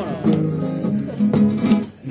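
Acoustic guitars strumming a short instrumental passage between the sung verses of a carnival chirigota song, breaking off briefly just before the end.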